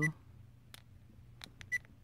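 ODRVM action camera's button beeps as its menu buttons are pressed: a few faint clicks, then two short high beeps near the end.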